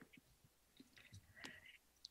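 Near silence: room tone, with a few faint soft ticks.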